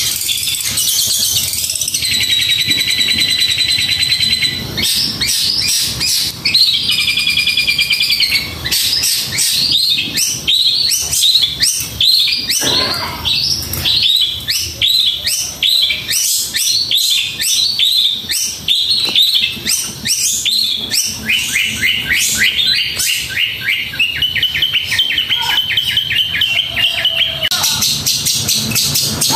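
Caged long-tailed shrike (cendet) singing a fast, dense, almost unbroken stream of high-pitched rapid notes and chattering, with several held buzzy trills.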